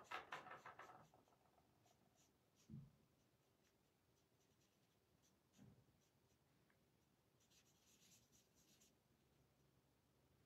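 Faint scratchy strokes of a Stampin' Blends alcohol marker colouring on cardstock: a quick run of strokes in the first second, then scattered strokes with a couple of soft low knocks.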